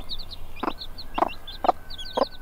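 Mother hen clucking to her chicks, a slow even run of low clucks about two a second, the typical call of a hen leading a brood. A chick peeps over it in quick high chirps.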